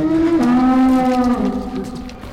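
A long, low moaning tone with many overtones. It drops a step in pitch about half a second in, holds, and fades near the end.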